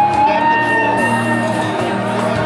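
Live band music with an electric guitar playing over steady bass notes and a held melody line.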